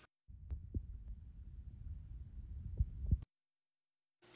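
Handling noise from a hand or arm pressed against the phone's microphone: muffled low rumbling with a few dull thumps, cutting off suddenly near the end.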